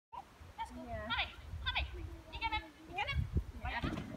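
A dog whining and yelping in a series of high, sliding cries, one of them drawn out longer near the middle.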